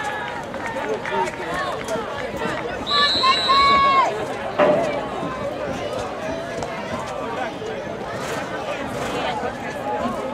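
Spectators chatting, then a long shrill referee's whistle about three seconds in, lasting about a second and dropping at its end, followed half a second later by a sharp thump of the football being kicked off the tee.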